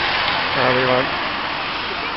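Steady rushing noise of a bus driving along a rain-soaked street, tyres hissing on the wet road, with a short voice about half a second in.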